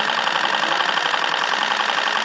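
Steady mechanical noise with a fast, even rattling pulse, like a small motor running.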